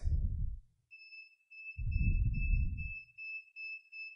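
A piezo buzzer driven by an Arduino as a proximity alarm from an ultrasonic distance sensor, starting about a second in and beeping a high-pitched tone a few times a second: the sensor is picking up something in range, and the beeps come faster the nearer it gets. Low muffled rumbles near the start and in the middle.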